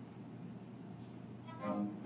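Quiet room tone, then about one and a half seconds in a string quartet of violins and lower strings starts playing, bowed notes sounding together.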